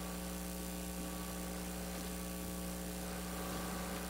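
Steady electrical mains hum: a low hum with a ladder of higher even tones above it, unchanging throughout.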